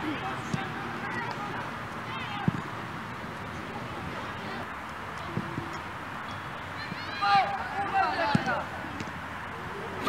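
Shouts and calls from young football players and sideline spectators over a steady outdoor background, with a few short thuds of the ball being kicked. The shouting gets louder and more excited from about seven seconds in.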